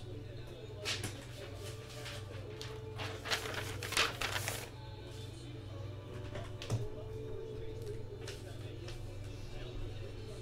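Quiet background music over a steady low hum, with a short cluster of scratchy handling noises about three to four and a half seconds in.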